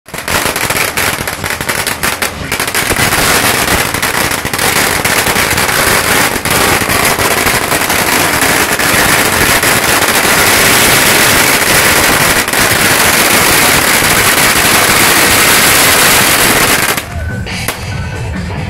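A long string of firecrackers burning in a rapid, unbroken crackle of bangs. It thickens after the first few seconds and cuts off abruptly near the end.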